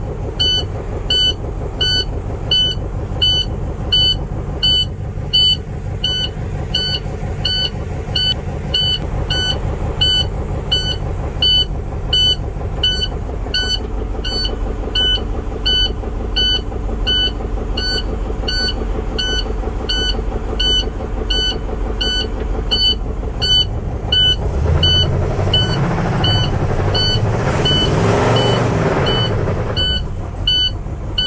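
International MaxxForce diesel engine running with critically low oil pressure, with the dash warning alarm beeping steadily about once a second; about twenty-five seconds in the engine is revved up for several seconds. The engine is taken to be ruined by running on low oil pressure.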